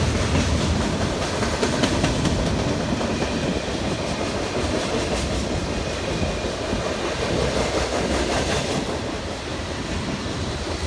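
Freight cars of a passing train, mostly covered hoppers, rolling by on steel wheels: a steady rolling rumble with occasional clicks of wheels over the rail joints, easing slightly near the end.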